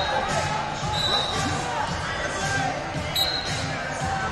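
Many voices and shouts in a large sports hall, overlapping and echoing. Two brief high-pitched tones cut through, about a second in and again a little after three seconds.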